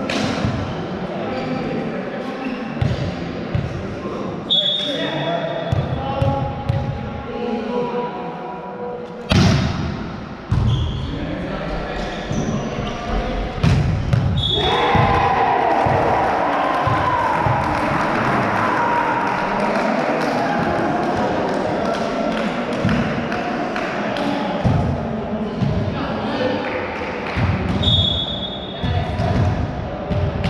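Volleyball match in a large, echoing sports hall: the ball bouncing and being hit, with a few sharp loud impacts, three short referee whistle blasts, and players and spectators shouting, busiest in the second half.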